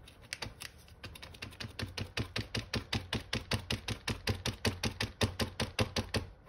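Valve tip of a Birchwood Super Black touch-up paint pen being pumped against paper, a rapid, even run of clicks about seven a second that grows louder after the first second: the pen is being primed until the black paint starts to flow.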